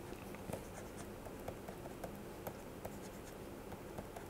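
A stylus writing on a pen tablet, heard faintly as a scatter of light ticks and scratches while a formula is handwritten.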